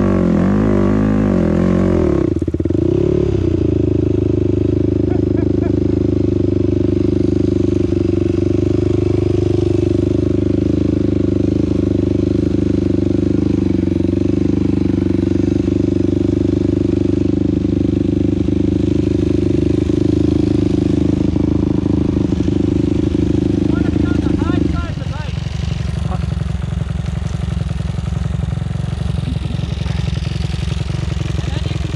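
Dirt bike engine revving with its pitch rising and falling as it climbs a loose gravel hill, then dropping abruptly about two seconds in as the climb fails and the bike stops on the slope. It runs steadily for about twenty seconds, then near the end settles to a slower, pulsing idle.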